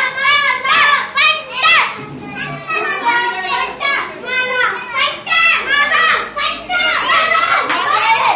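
A crowd of young children shouting and calling out excitedly all at once, their high-pitched voices overlapping without pause.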